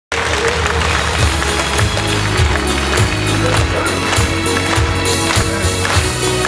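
Instrumental introduction of a pop song: a steady beat a little under twice a second under held chords, before the vocals come in.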